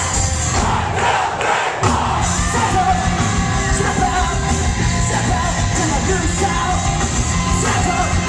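Punk rock band playing live at full volume, with a packed crowd singing and yelling along. About one and a half seconds in, the low end drops out for a moment, then the full band comes back in.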